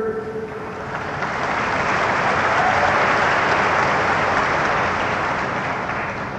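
A large audience applauding, the clapping building over the first couple of seconds and then slowly dying away.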